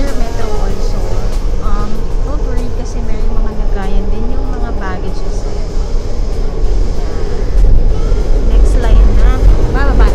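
Low rumble of a Taoyuan Airport MRT express train heard from inside the moving carriage, growing louder in the last few seconds.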